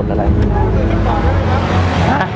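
Busy street traffic: motorbike and car engines running in a steady low rumble, with scattered voices of people around.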